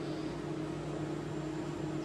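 Kyocera ECOSYS multifunction laser copier running a copy job: a steady mechanical hum with fan noise and constant low tones.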